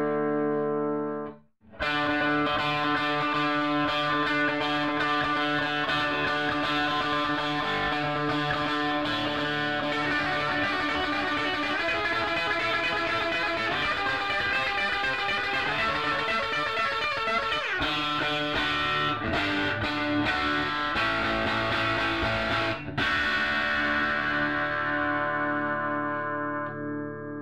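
Fender electric guitar played through a 1960 Fender tweed Deluxe tube amplifier. A ringing chord is cut off sharply about a second and a half in, then continuous playing follows, ending on a held chord.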